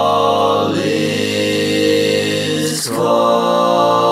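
One man's voice, multitracked into five parts, singing a held a cappella barbershop chord on an open vowel in a slow, chant-like style. The chord moves to a new one about a second in, and again near the three-second mark just after a brief hiss.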